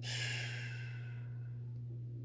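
A man sighing, one audible breath out lasting just under a second, over a steady low background hum.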